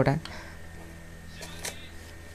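Brief rustling handling noise about one and a half seconds in, as the handheld camera and the paper are moved, over a low steady hum.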